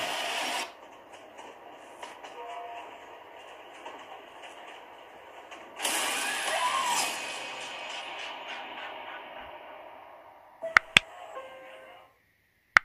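Horror film trailer soundtrack of tense music and sound effects, loud at the start, quieter in the middle, with a loud swell about six seconds in that slowly fades. Near the end come two sharp clicks in quick succession, the click effects of a subscribe-button animation.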